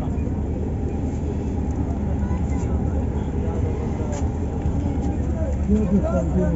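Steady low rumble of a Yutong coach's engine idling, heard from inside the passenger cabin, with faint voices in the background.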